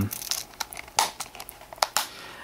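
Thick leather knife sheath and belt being handled and turned over in the hands: soft rubbing with a scatter of small clicks, the sharpest about a second in and just before the end.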